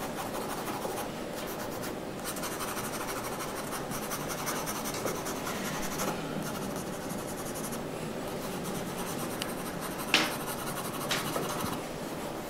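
Graphite pencil scratching steadily across drawing paper in quick shading strokes. Near the end, two sharp taps stand out above it.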